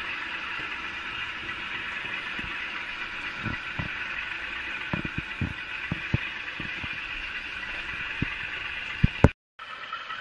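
DCC sound decoder in a model Class 52 'Western' diesel-hydraulic locomotive playing a steady diesel engine sound through its small speaker. Irregular sharp clicks from the model wagons' wheels running over rail joints and pointwork join in from a few seconds in, the loudest two near the end.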